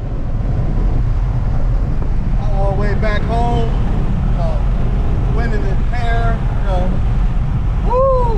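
Steady low rumble of road and engine noise inside the cab of a moving pickup truck.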